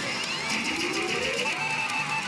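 Electronic music and sound effects from a Kuru Kuru Pachinko Darumash pachinko machine, with a tone rising in pitch through the middle, over the steady din of a pachinko hall.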